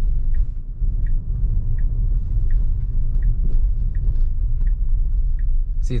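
Steady low rumble of road noise inside a slowly moving Tesla Model Y's cabin. A faint turn-signal ticks through it, about three ticks every two seconds.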